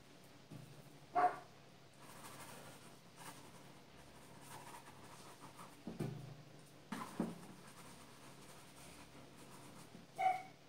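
An oil-paint brush scrubbing faintly on canvas, with one short high squeak about a second in and a few soft knocks around six and seven seconds.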